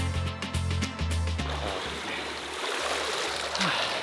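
Background music with a steady beat that stops about one and a half seconds in, followed by water sloshing and splashing in a swimming pool.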